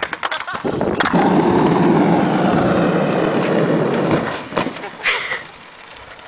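Skateboard wheels rolling on asphalt: a steady rumble for about four seconds that fades away, with a few clacks near the start.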